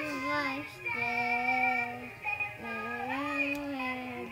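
A toy Elsa singing doll plays a recorded woman's singing voice with backing music through its small speaker, in long held notes of about a second each with short breaks between them.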